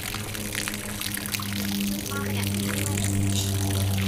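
Water from a garden hose pouring and splashing onto the canal surface, over a steady low hum.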